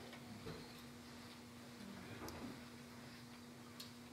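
Near silence: quiet room tone with a faint steady hum and a few faint, scattered ticks.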